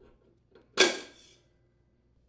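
Steel tension spring on a lawn mower transmission unhooked with pliers: a single sharp metallic snap about three quarters of a second in, ringing briefly as it fades.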